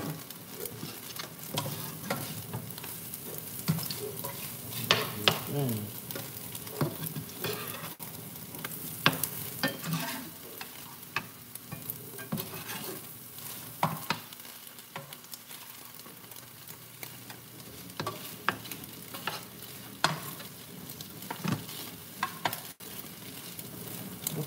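Pancakes frying in nonstick pans, sizzling steadily, with frequent taps and scrapes of metal spatulas against the pans as they are worked and flipped.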